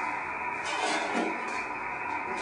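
Amateur radio transceiver's speaker giving out steady receiver hiss on an empty channel, with no station answering the call.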